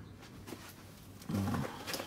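A man's brief wordless voiced sound, a low hesitation noise, about a second and a half in, over an otherwise quiet background.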